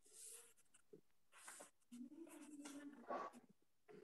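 Near silence over a video call, broken by a few faint rustles and a faint held tone about halfway through.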